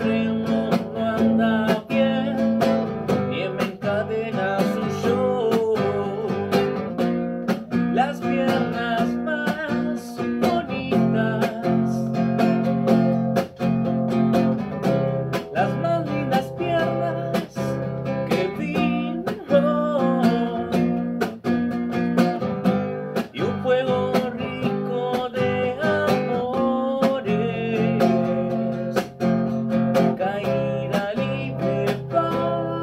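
Acoustic guitar strummed in a steady rhythm, with a man singing along in Spanish over it.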